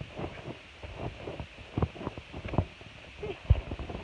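Irregular soft thumps of bare feet bouncing on a trampoline mat, with knocks and rustle from the jostled phone, the heaviest thumps in the second half.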